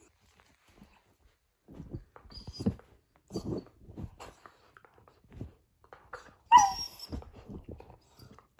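Blue heeler puppy playing with a rubber toy on bedding: scattered soft thumps and rustles as it mouths and grabs the toy. About six and a half seconds in there is one short, loud, high-pitched squeal that falls in pitch.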